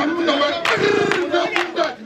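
A man sings through a microphone with other voices joining in, and hands clap sharply along with the song.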